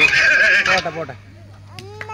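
Loud voices cut off suddenly about a second in, leaving a steady low hum, and children's high voices call out near the end.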